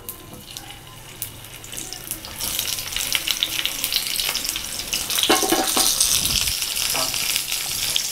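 Steamed baby potatoes sizzling and crackling in hot oil with tempered mustard and cumin seeds in a nonstick pan. The sizzle builds after about two seconds as the potatoes go in, then holds steady.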